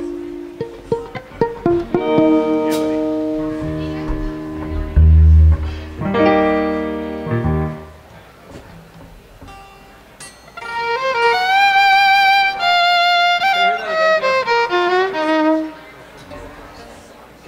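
Instruments sounding on their own between songs: held chords fading slowly with a deep bass note about five seconds in, then, from about ten seconds in, a fiddle bowing a short melodic phrase with a wavering, vibrato pitch.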